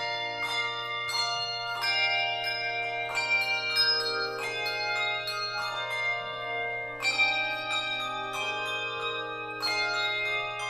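A handbell choir ringing a piece: chords of several tuned handbells struck together every half second or so, each stroke ringing on and overlapping the next.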